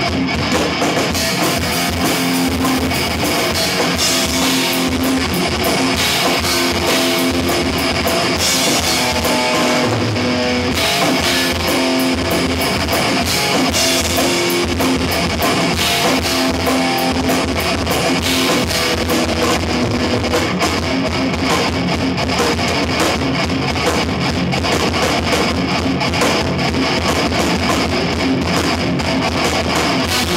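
Live death metal played by a guitar-and-drums duo: distorted electric guitar riffing over fast, dense drumming, loud and unbroken.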